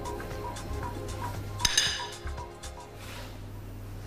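Background music with a steady ticking beat, about two ticks a second. About two seconds in there is a single bright ceramic clink, a small china bowl being set down.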